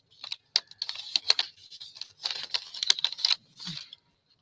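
Stiff paper tags and a small handmade paper booklet being handled and shuffled by hand: irregular clusters of crinkling and clicking that die away near the end.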